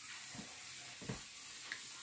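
Silk saree and blouse fabric being handled and lifted, a soft rustle over a steady hiss, with two soft low thumps about half a second and a second in.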